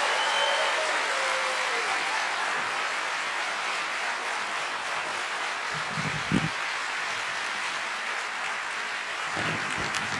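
Large audience applauding steadily, slowly fading.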